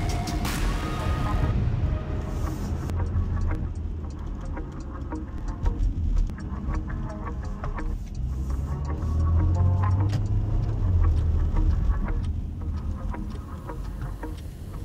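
Cabin noise of a moving Porsche Macan T: low, steady rumble of its 2-litre turbo four-cylinder and tyres, swelling for a couple of seconds near the middle. Background music plays over it, clearest at the start.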